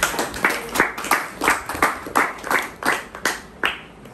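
Hands clapping in a steady rhythm, about three claps a second, stopping shortly before the end.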